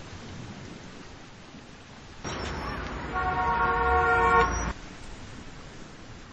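A car horn sounding one long honk, starting about two seconds in and cutting off suddenly some two and a half seconds later, over a steady hiss.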